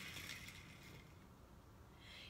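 Faint rolling of a small toy car's wheels across a wooden floor after it runs down a wooden-board ramp, dying away within the first second, then near silence.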